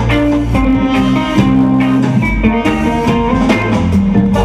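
A live band playing, with electric guitars and a drum kit over steady low notes.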